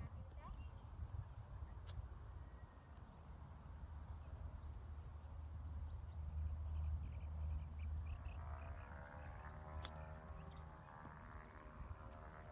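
Wind on the microphone with two sharp clicks, one about two seconds in and one near ten seconds. The later click is a golf club striking the ball on a short chip shot.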